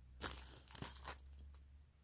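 Plastic kit packaging crinkling as it is handled, a quick flurry of small crackles lasting about a second and a half.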